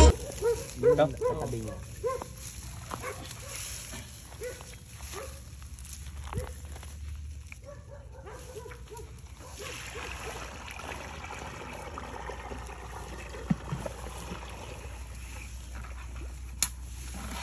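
Water sloshing in a bucket and then being poured out onto the ground, flooding a mud crab's burrow to drive the crab out. In the first few seconds there are several short, pitched cries from an animal.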